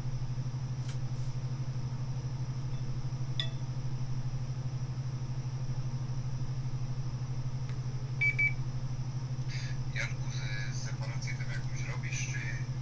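Steady low electrical hum on a workbench full of powered electronics, with a faint high whine above it and a single short high beep about eight seconds in.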